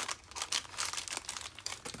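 Thin plastic packaging of a cupcake-liner kit crinkling as it is handled, a run of irregular crackles.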